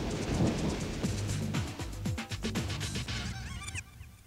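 Background music on the video's soundtrack, with a quick run of percussive notes and a few short rising glides just before it drops away at the end.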